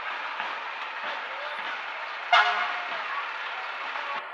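Fire truck horn giving one short, loud toot a little over two seconds in, over a steady background of crowd chatter.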